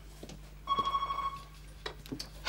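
Landline telephone ringing: one short ring of under a second, starting just under a second in, followed by a click near the end.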